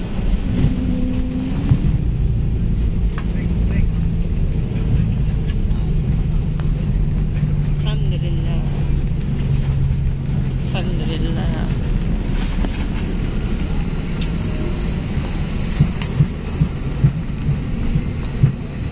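Airliner cabin noise while the plane rolls on the ground after landing: a steady low rumble of engines and wheels with a humming tone. A few short knocks come near the end.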